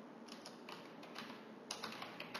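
Computer keyboard keystrokes: a handful of faint, irregularly spaced key clicks as a web address is typed.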